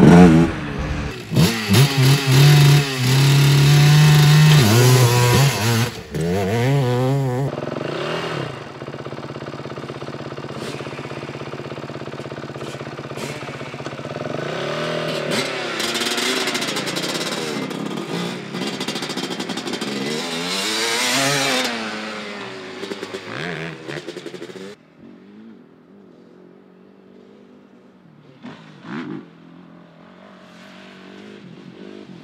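Honda TRX250R quad's single-cylinder two-stroke engine revving up and down on the track, its pitch rising and falling in repeated sweeps. It is loudest for the first seven seconds or so, then fainter, and dies away about 25 seconds in.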